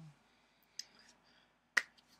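A single sharp finger snap near the end, after a couple of faint small clicks, over quiet room tone.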